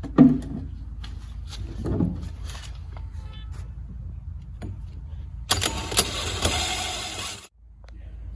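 Cordless drill driving a large hole saw into the plastic wall of a polyethylene tank, cutting for about two seconds from a little past halfway and then stopping abruptly. Before the cut there are a few handling knocks as the drill and saw are set against the tank.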